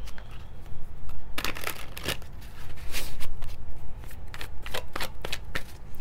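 A deck of cards being shuffled by hand: irregular crisp snaps and riffles, busiest from about one and a half to three and a half seconds in.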